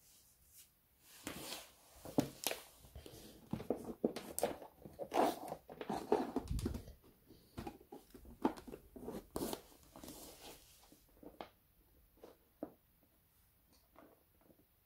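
Handling noise from electrical wires, push-in lever connectors and a power cord being moved about on a laminate floor. Irregular rustles and clicks crowd together through the middle and thin out after about eleven seconds.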